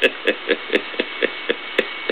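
A man laughing in short, evenly spaced bursts, about four a second, heard through a narrow-bandwidth radio broadcast recording.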